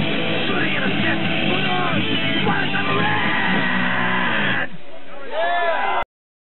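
Punk rock band playing live with distorted electric guitar, drums and vocals. The full band drops out abruptly about three-quarters of the way through, leaving a thinner sound with short pitch-bending tones at the very end.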